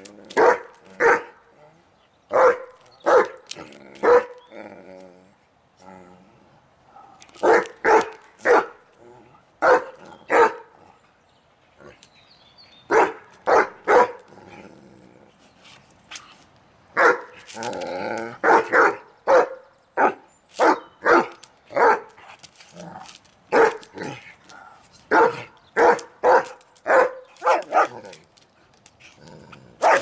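Irish wolfhound barking at another dog to get it to play: runs of two to five sharp barks a few tenths of a second apart, with short lulls between runs.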